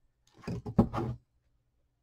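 A short burst of knocks and rustling, about a second long with its sharpest knock near the middle, from craft materials and a tool being picked up and handled on a tabletop.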